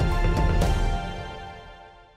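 Background music with a few percussive strikes, fading out from about a second in.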